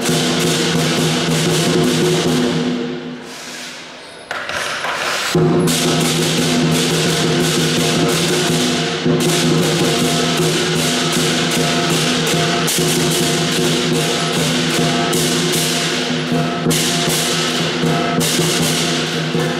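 Lion dance percussion: a large lion dance drum beating with clashing hand cymbals ringing over it. The playing drops away about three seconds in and comes back in full just after five seconds.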